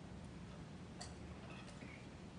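Quiet hall with a steady low hum, broken by a few faint, irregular small clicks: one about a second in and two close together near the end.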